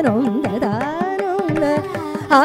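Carnatic vocal music: a woman's voice singing a sliding, heavily ornamented melody, shadowed by violin over a steady tanpura drone. Mridangam and ghatam strokes run through it at several strokes a second.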